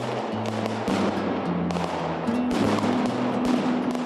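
A mascletà's firecrackers going off in a dense, unbroken crackle of rapid bangs, with background music underneath.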